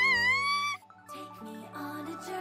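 A high-pitched cartoon character's cry rising in pitch, cut off just under a second in; then the anime's opening theme music starts with held notes.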